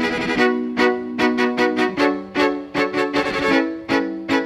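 Amplified violin playing a repeating figure of short bowed notes, about two and a half a second, over a steady held low note, with a brief scratchy flurry of bowing at the start.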